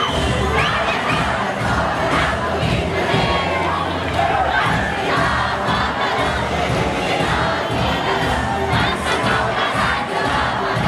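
A large crowd of young people shouting and cheering together, a dense, unbroken din of many voices.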